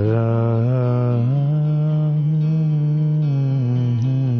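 A man's voice holding one long, low wordless note as part of a live acoustic rock song. The pitch steps up about a second in and drops back near the end.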